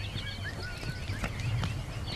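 Several birds chirping with quick, short calls that rise and fall and overlap one another, over a low steady rumble.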